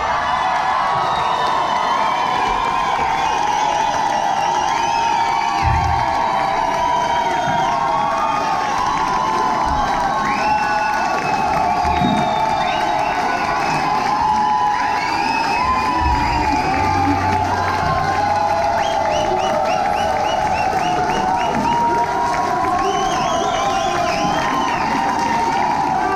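Large indoor audience cheering and shouting loudly and steadily, with high whoops and clapping.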